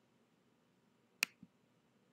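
A single sharp click about a second in, followed by a softer, lower knock, over faint hiss.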